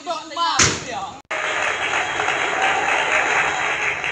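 Players' voices and one sharp smack, most likely a volleyball being struck, then after an abrupt cut a steady, loud hissing noise with no clear pitch or beat.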